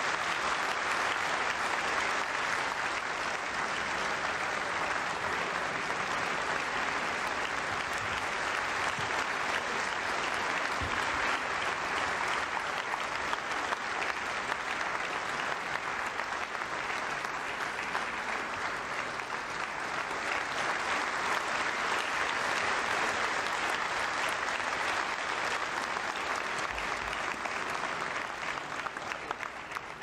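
Large audience applauding steadily, the clapping thinning out just before the end.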